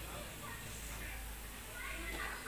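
A small child's faint, high-pitched voice, a few short sounds rising and falling in pitch.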